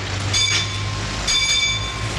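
Steady rumbling noise with a low hum, over which a horn-like chord of several tones sounds twice: a short blast about a third of a second in, then a longer one from a little past halfway.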